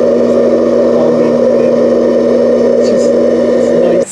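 Hot-air coffee roaster running: a steady, loud fan-and-heater hum with an even whooshing noise. It cuts off abruptly at the end.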